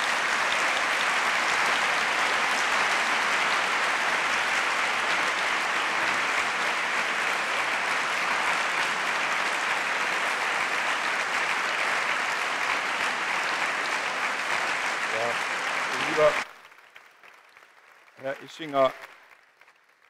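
Large audience applauding steadily, the clapping cutting off abruptly about sixteen seconds in.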